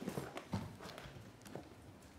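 Faint, irregular taps and light knocks of papers and a document folder being handled and leafed through at a desk.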